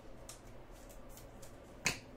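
Trading cards being handled: faint light scrapes and ticks of card stock, then one sharp click a little before the end.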